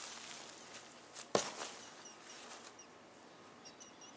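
Paper towels rustling softly as a slab of cured pork belly is lifted and moved on them, with a single sharp knock about a second and a half in.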